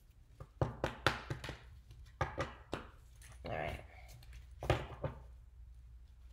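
A deck of tarot cards being handled and shuffled by hand: a string of short, irregular clicks and taps, the sharpest one near the end.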